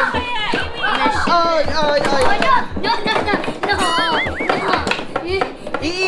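Excited voices calling out over background music with a steady beat about twice a second, and a brief warbling high tone about four seconds in.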